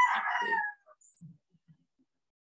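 A rooster crowing in the background, its call falling in pitch and stopping under a second in, followed by near silence.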